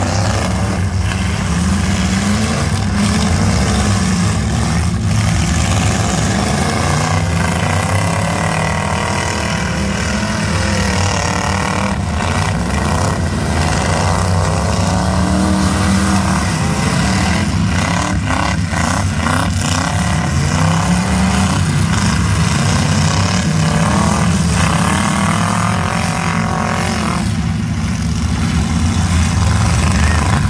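Several full-size pickup trucks' engines revving hard and rising and falling in pitch as they drive around a demolition derby, with occasional crashes of metal as they ram each other, a quick run of hits a little past the middle.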